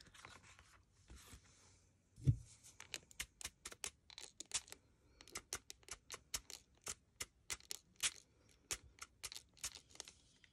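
Small fine-mist spray bottle spritzing water over inked paper in quick short bursts, about four a second, to make the ink move and wick. A single dull thump comes about two seconds in.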